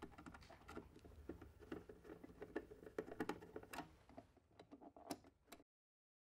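Faint, irregular small clicks and ticks of a Phillips screwdriver turning out the battery-cover screws of a Natus Camino 2 ICP monitor, ending abruptly near the end.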